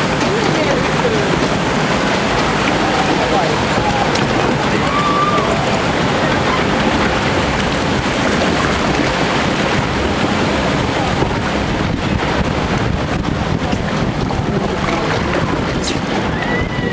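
Water rushing and churning in a log flume's trough as the ride boat floats along, a steady, unbroken noise with wind buffeting the microphone.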